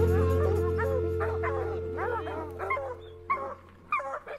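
A hunting hound giving a string of short, high calls, several a second, whose pitch rises and falls, over background music that fades out near the end.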